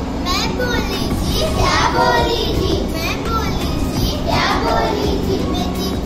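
Young girls' voices in a sung chant of a rhyme in Hindi-Urdu, with two rising cries about one and a half and four and a half seconds in.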